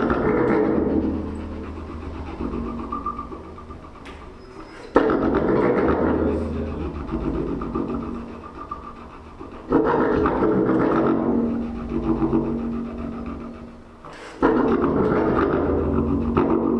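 Low, growling brass notes blown into a horn fitted with very long extension tubing. One note is sounding at the start and three more begin suddenly, about every five seconds, each held with a deep drone underneath and then fading away.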